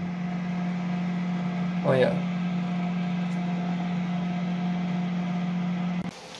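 Steady low electrical hum from the egg-candling equipment, with a fainter higher tone above it, cutting off at the very end.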